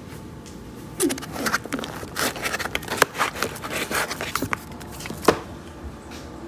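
Handling noise as a pistol is lifted out of a foam-lined hard case: a run of scrapes, rustles and small clicks starting about a second in, with one sharper click near the end.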